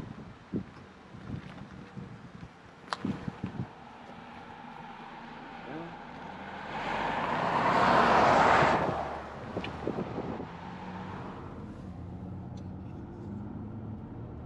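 A pickup truck passing by on the road: its tyre and engine noise swells to a peak about eight seconds in, then fades away.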